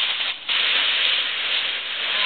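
Dry leaves rustling as a puppy plunges into a leaf pile: a dense rustle that starts suddenly about half a second in and keeps on.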